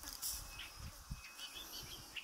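Faint outdoor ambience: scattered short, high chirps over a low rumble.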